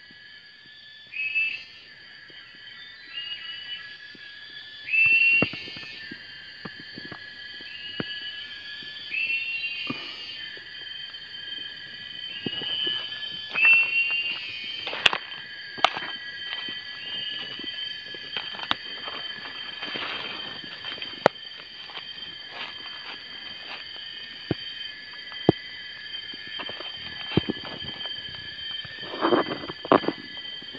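Jungle ambience: a steady high-pitched drone of insects with a short rising call repeated every second or two, loudest in the first half. Scattered sharp clicks and crackles come from footsteps and handling on dry bamboo leaves.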